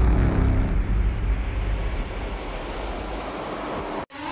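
A low rumbling noise, loudest at the start and slowly fading, then cut off abruptly at the very end.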